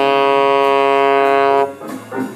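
Saxophone holding one long, steady note in a blues solo, stopping shortly before the end.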